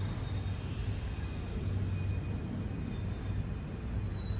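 Steady low rumble of room noise with faint high tones, without speech or clear single events.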